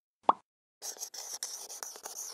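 A single short pop about a quarter second in, the loudest sound here. From just under a second in, a felt-tip marker scratches and squeaks over paper as a drawing is sketched.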